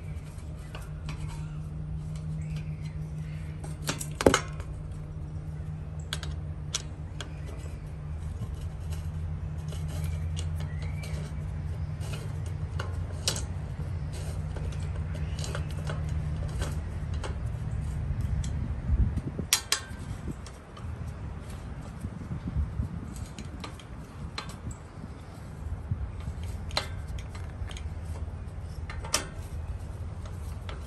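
Metal clicks and clinks of a hex key working the mounting bolts of a steel gate lock as they are tightened, with a sharp click about four seconds in and more around two-thirds through and near the end. Under them runs a steady low hum that stops about two-thirds of the way through.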